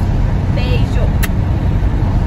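Steady low rumble of road and engine noise inside a moving car's cabin. A short vocal sound comes about half a second in, and a single click just past one second.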